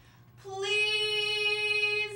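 A voice holding one high sung note, steady in pitch, starting about half a second in and lasting about a second and a half.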